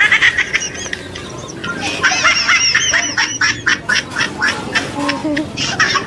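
An animal's high-pitched, squeaky calls, many short cries in quick succession, thickest from about two seconds in.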